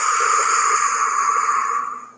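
A woman's long, slow exhale, a steady breathy hiss that fades out near the end: the deliberate out-breath of a deep-breathing exercise.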